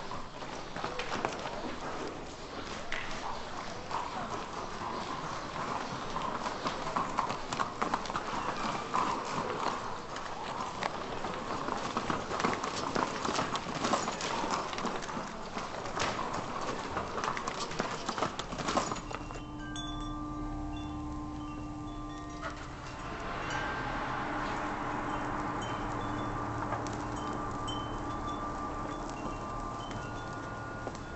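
Busy crowd-scene ambience, a dense clatter of many quick clicks and knocks with murmuring in it. A bit over halfway through it cuts off and gives way to a soft, sustained film score of held, chime-like notes.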